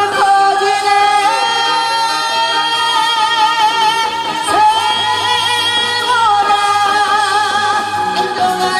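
A woman singing a Korean trot song into a microphone over musical accompaniment, holding long notes with a wavering vibrato.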